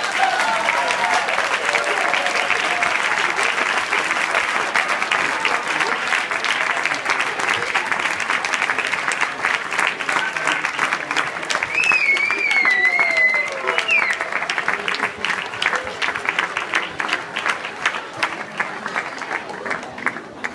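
Audience applauding with cheers after a handpan group performance, a high wavering whistle rising above the clapping about twelve seconds in. The applause thins to scattered claps near the end.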